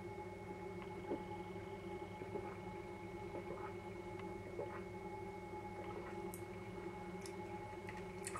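A man drinking beer from a glass: a few faint swallows over a steady, quiet hum.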